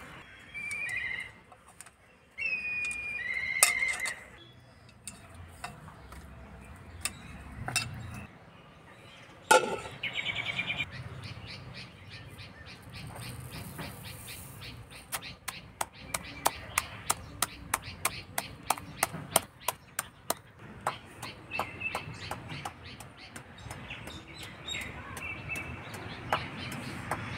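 A stone pestle pounding sugar crystals in a stone mortar, struck in a steady rhythm of about three blows a second through the second half, grinding the sugar to powder. Bird chirps can be heard earlier.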